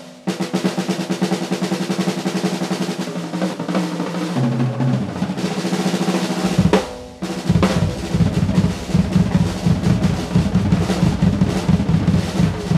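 Acoustic drum kit played with fast double-stroke rolls, mostly on the snare, with the roll stepping down across the toms about four seconds in. After a brief break around seven seconds, dense fast strokes resume with bass drum underneath.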